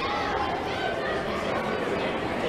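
Indistinct chatter of several people's voices talking over one another, with no clear words.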